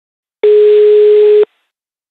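Telephone ringback tone on the calling line: one steady beep lasting about a second, the signal that the called phone is ringing.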